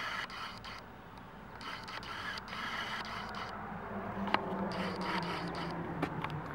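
Faint scraping and rubbing of a handheld camera being moved about inside a car cabin, with a low steady hum that strengthens about four seconds in and a single sharp click shortly after.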